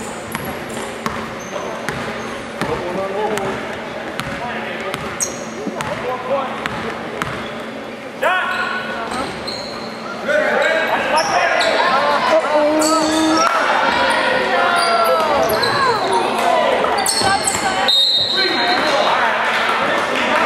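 A basketball bouncing on a hardwood gym floor, with the voices of players and spectators echoing in the gym. The voices get louder from about halfway through as play goes to the basket, and a short high whistle sounds near the end.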